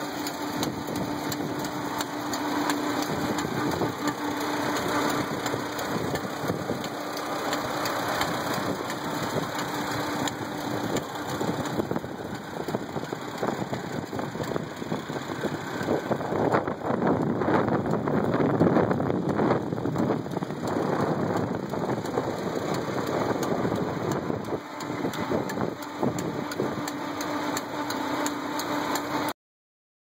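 A 1946 Farmall A's four-cylinder engine running steadily under belt load, driving a 1916 Williams gristmill with 30-inch stones, with a steady hum over the engine. The sound grows louder for a few seconds just past the middle.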